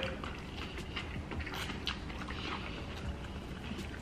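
Faint eating sounds: people chewing takeout noodles and cabbage, with small scattered clicks, over a low steady hum.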